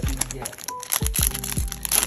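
Foil booster-pack wrappers crinkling and crackling as trading-card packs are pulled from the box and one is torn open, with background music playing.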